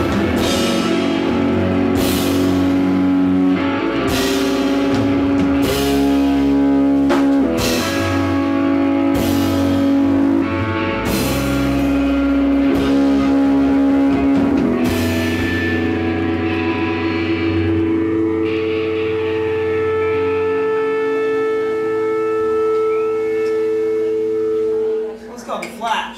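Live rock band with electric guitars, bass and drum kit playing loudly, with crashing chord hits every second or two. About halfway through the drums drop out and a chord is held and rings on, stopping about a second before the end.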